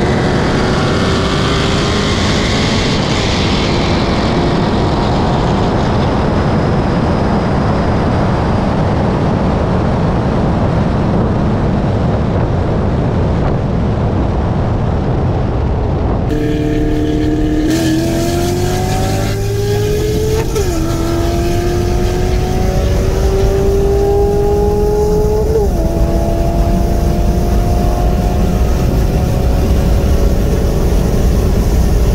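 V8 cars racing side by side at full throttle at highway speed, with heavy wind rush over the engine sound. After a cut, an engine pulls hard from about 60 mph: its revs climb steadily and drop sharply at each of three upshifts.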